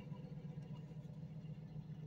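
A vehicle engine idling steadily, heard as a faint, even low hum.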